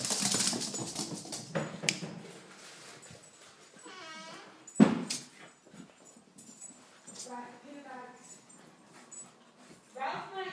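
A Yorkshire terrier and a cavachon playing, giving short whines and growly vocal noises. A sharp thump about five seconds in is the loudest sound.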